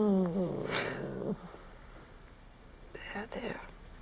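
A woman's voice: a long wordless moan falling in pitch at the start, with a sharp breath under it, then a few short breathy vocal sounds about three seconds in.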